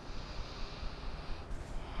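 A group of people breathing audibly through the nose, a soft hissing breath that changes about one and a half seconds in, as one breath gives way to the next.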